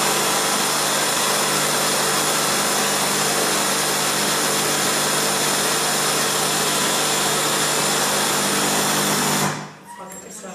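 A loud, steady machine-like whirring buzz with a constant pitch. It starts abruptly and cuts off suddenly shortly before the end.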